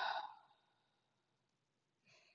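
A person's deep out-breath, heard as a sigh, fading away within the first half second; then near silence.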